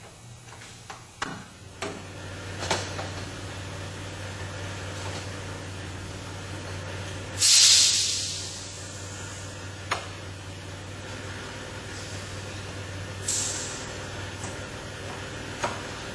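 Metal ductwork being fitted and clamped by hand: a few sharp metallic clicks and knocks over a steady machinery hum. A loud burst of hissing air about halfway through, and a shorter hiss later.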